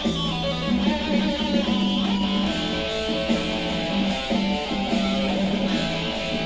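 Ibanez Jem replica electric guitar playing a lead line: held notes that change pitch every half second to a second.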